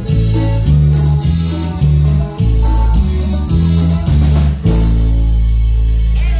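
A live band playing loud dance music, with a heavy bass line moving note by note and a long held low note near the end.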